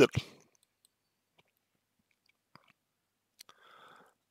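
A man's speech trailing off in the first moment, then a pause of near silence with a few faint mouth clicks and a soft breath near the end.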